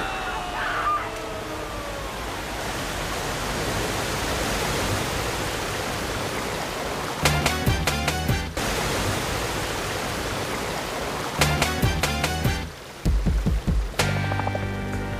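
Film sound of rushing, pouring water: a steady roar of a torrent. Two short bursts of music with sharp hits break in about halfway and again about three quarters through, and a few heavy low thuds come near the end.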